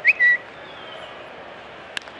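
Steady ballpark crowd noise, with a loud, short two-note whistle just after the start: the first note rises, the second is held. Just before the end comes the single sharp crack of a bat hitting a pitched baseball.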